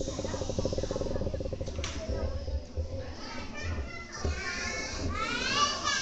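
Children's voices chattering and calling out in a hall, with a high-pitched voice rising and falling about five seconds in.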